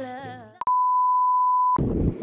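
A song with a singing voice fades out. A single steady electronic beep tone, about a second long, then cuts in and stops abruptly, like an inserted censor bleep. Outdoor noise starts as the beep ends.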